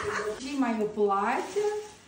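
A woman's voice with a long rising-and-falling, drawn-out sound, over the crinkling of a clear plastic garment bag being handled.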